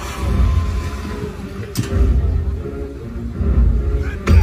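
Jet ski engine running on the water, its low rumble rising and falling. A single sharp crack cuts through about two seconds in.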